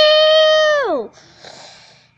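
A child's voice holding one long wordless high note for about a second, then sliding down and breaking off into a breathy hiss.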